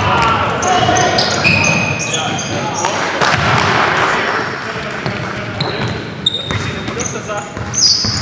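Basketball game in a gym: sneakers squeaking on the hardwood court in many short, high squeaks, with a basketball being dribbled and players' voices echoing in the hall.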